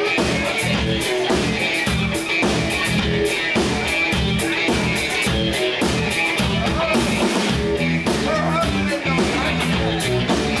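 Live rock band playing: electric guitars, bass and drum kit, with a steady beat.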